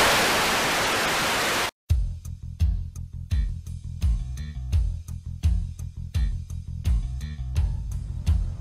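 TV-static hiss, a steady even rush lasting under two seconds that cuts off sharply. Then background music with a steady beat and heavy bass starts.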